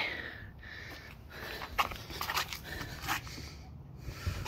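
Metal crucible tongs clinking and scraping against a crucible as molten Nordic gold, a copper alloy, is poured into a mold, with a few short sharp clicks over a soft breathy hiss.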